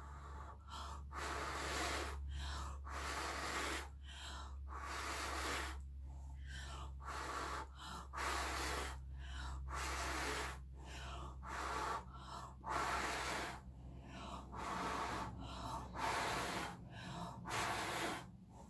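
A person blowing hard with her breath, a long series of strong exhales roughly one a second with quick gasping intakes between, pushing wet acrylic paint across the canvas into blooms. It is a lot of blowing, enough to leave her light-headed.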